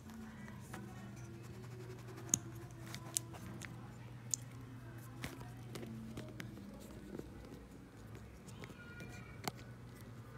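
Handling of a GoPro camera and its charging cable: several sharp clicks and taps, the loudest about two seconds in, over a faint steady low hum.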